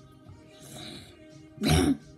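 A person's short, loud throat-clearing cough near the end, over faint background music, with a softer breathy sound about a second before it.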